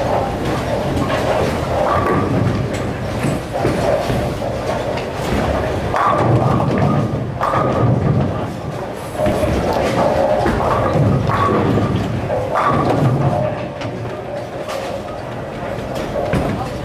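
Bowling alley din: balls thudding and rolling down the lanes and pins clattering across the house, over background chatter and music.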